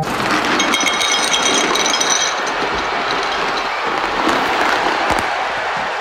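Dry dog biscuits poured from a bag into a ceramic bowl: a long, steady rattle of kibble, with a brief ringing clink from the bowl in the first couple of seconds.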